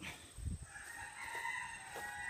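A rooster crowing once, a faint drawn-out call lasting about a second and a half.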